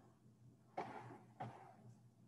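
Two sharp knocks about half a second apart, each with a short ringing tail, over a faint background hum.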